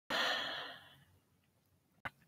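A woman's breathy sigh or exhale, starting right away and fading out within about a second, then quiet room tone.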